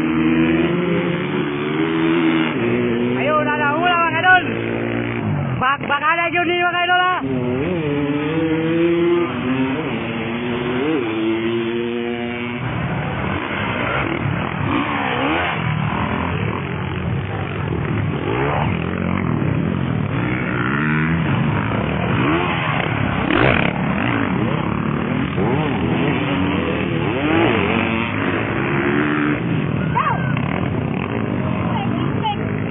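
Motocross dirt bike engines revving up and down as the bikes race around the track. One bike is heard close and clear over the first dozen seconds, with hard climbs in pitch a few seconds in; after that several bikes' engines overlap and rise and fall.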